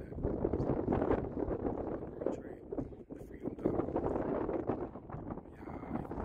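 Wind rumbling and buffeting on the microphone in irregular gusts, with faint indistinct voices under it.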